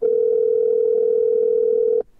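Telephone ringback tone: one steady two-second ring signal, starting and stopping abruptly. It is the caller's sign that the dialled phone is ringing and has not yet been answered.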